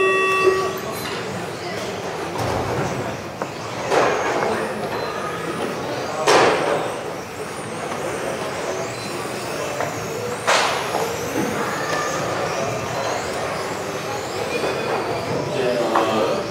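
Several electric radio-controlled touring cars racing around an indoor circuit: a steady mix of motor whine and tyre noise, with faint high whines gliding up and down as the cars speed up and slow. Three sharp bursts stand out, about four, six and ten seconds in.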